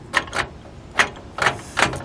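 Handful of sharp metallic clicks and clacks, about five spread unevenly over two seconds, from an aluminum slide-on flat-lip trailer coupler lock being handled and fitted onto a trailer coupler.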